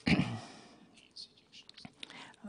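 A pause in a spoken talk: a short voiced sound from the speaker at the start, then faint breath and small mouth clicks.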